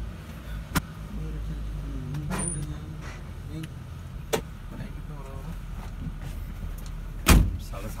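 Steady low engine and road rumble of a moving safari jeep, heard from on board. A few sharp knocks cut through it, the loudest a little after seven seconds in.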